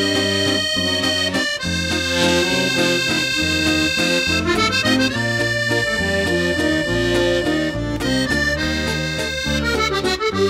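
Accordion music: a melody of held notes over a steady, repeating bass-and-chord accompaniment.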